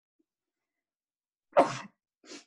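A single short, loud burst of breath-noise from a person at an open video-call microphone, near the end.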